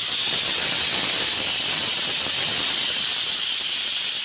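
Pressure cooker on a gas stove letting off steam through its weighted whistle valve: a loud, steady hiss that starts suddenly. It is the sign that the cooker is at full pressure and the tahari inside is cooked.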